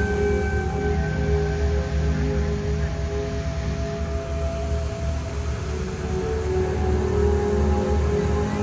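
Slow, dark ambient music: long held droning tones over a deep continuous low rumble, the held notes shifting a few times.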